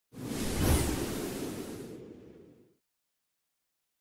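A whoosh sound effect: one rush of noise that swells up within the first second and then fades away over about two seconds.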